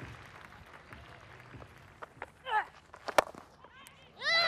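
Quiet cricket-ground ambience: a low, even background murmur. A brief distant call comes about two and a half seconds in, and a single sharp click a little after three seconds.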